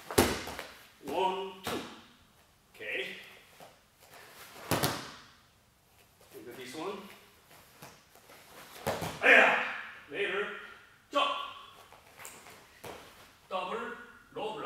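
About four sharp snaps and thumps from a taekwondo form being performed in a dobok: the uniform cracking on strikes and blocks, and feet landing on the mat. Short bursts of a man's voice fall between them.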